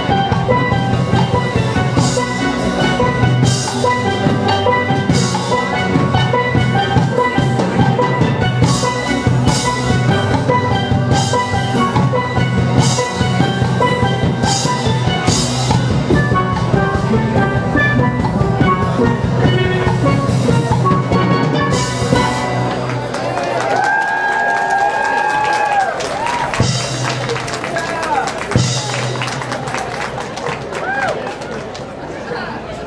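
Steel orchestra of steel pans backed by drums playing an up-tempo piece with a steady beat. About three-quarters of the way through, the drums drop out and voices call out over lighter pan playing, before a few drum hits come back near the end.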